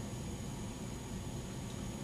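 Steady room noise: a low hum and hiss with a faint high steady whine, no speech.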